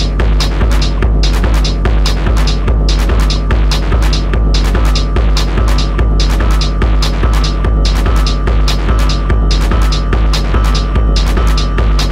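Hard techno from a live DJ mix: a loud sustained sub-bass under an even, driving kick-drum and hi-hat beat, with a thin high synth tone that grows stronger near the end.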